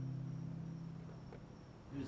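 The last strummed chord of an acoustic guitar ringing out and fading away, with a steady high insect trill, crickets, in the background.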